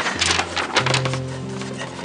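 Soft background score of sustained held notes, the low note stepping up about a second in. Paper rustles briefly at the start as a letter sheet is handled.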